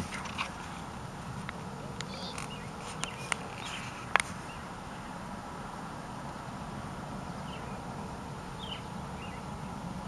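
Steady low hum of a car cabin, with a few light clicks and several faint bird chirps.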